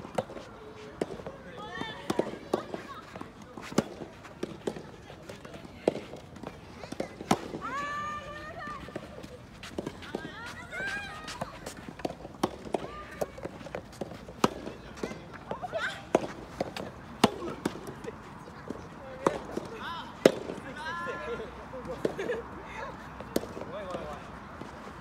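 Soft tennis rallies: sharp pops of rackets striking the soft rubber ball and the ball bouncing on the court, at irregular intervals, with players' voices calling out between shots.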